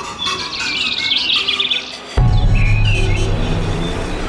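Birds chirping in quick trills; just after two seconds in, music with a deep bass starts, and a few more chirps sound over it.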